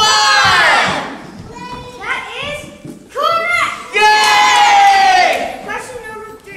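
A group of children shouting together on stage, in several loud outbursts, the last one held for over a second.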